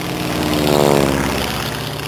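Sound effect of a propeller plane's engine flying past: a droning engine that grows louder to a peak about a second in, its pitch bending as it passes, then begins to fade.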